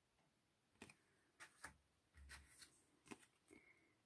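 Faint handling of tarot cards: a handful of light clicks and soft slides as one card is put down and the next picked up.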